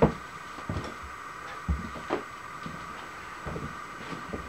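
A few light knocks and clunks, as of metal parts being handled, over a steady background hum.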